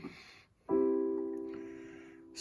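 Digital piano chord struck about two-thirds of a second in and held, ringing and slowly fading away.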